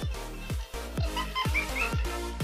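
Background electronic music with a steady beat of deep, falling bass kicks, about two a second, and a few short chirping notes in the second half.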